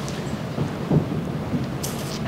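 Steady low rumbling room noise, with a short faint voice sound about a second in.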